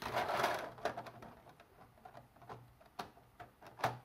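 Plastic building-brick plates being handled and slid over a brick model: a short scraping rustle at first, then a few scattered light plastic clicks, the loudest just before the end.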